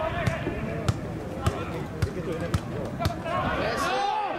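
Footballers shouting to each other on the pitch, with a run of sharp thuds of the ball being kicked and bouncing, about one every half second.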